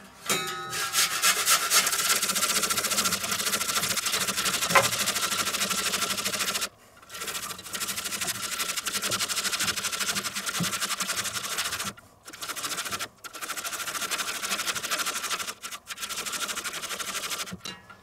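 A raw potato being grated on a flat stainless-steel hand grater: fast, steady rasping strokes, broken by a few short pauses.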